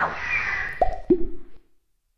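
Cartoon sound effects: a sudden falling swish, then two short pitched pops about a second in, the second lower than the first.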